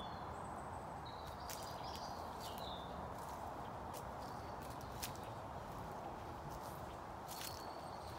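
Footsteps on a grassy, leaf-strewn path, irregular soft steps, with small birds calling in short high notes over a steady outdoor background hiss.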